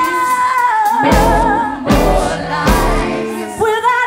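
Female lead singer with a live band, holding a long note with wide vibrato. The band drops out at the start and comes back in about a second in, and near the end it cuts out again as she slides up into a new held note.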